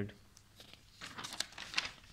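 Sheets of paper rustling and crinkling as handwritten note pages are flipped over, a run of short rustles starting about a second in.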